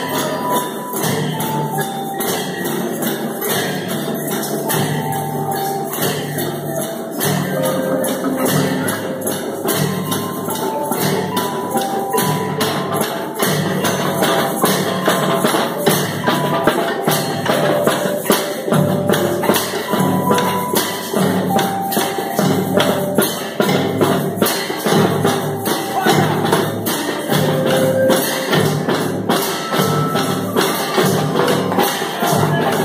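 A group of learners playing percussion together: metal triangles and a snare drum struck in a fast, steady rhythm, with a simple tune running over it.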